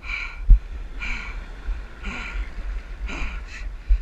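Short, breathy gasps and grunts from a man straining to haul in a large shark on a line, over a steady low rumble of wind and water on the microphone, with a single knock about half a second in.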